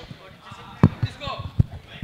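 Two dull thumps about a second apart, over faint chatter of voices in the hall.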